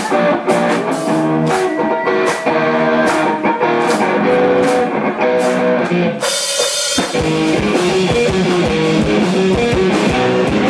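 Live rock band playing an instrumental passage, with electric guitar picking a melodic riff over bass and regular drum and cymbal hits. About six seconds in a short noisy swell breaks it, and the full band comes back in heavier, with denser drumming.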